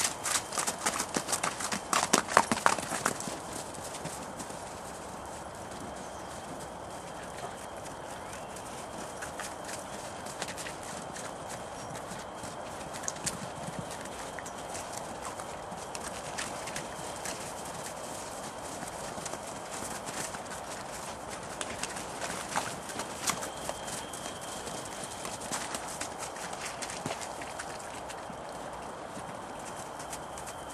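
Welsh ponies' hooves clattering on hard ground: a quick, loud run of hoof strikes at the start, then occasional single hoof steps over a steady background hiss.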